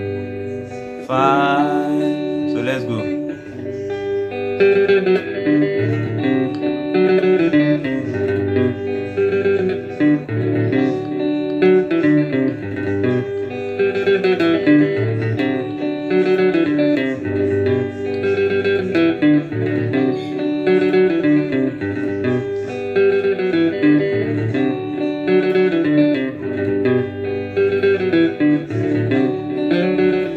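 Guitar playing a repeating tenor riff in G over a backing loop that alternates two chords, I and V. The pattern becomes fuller and louder about four seconds in.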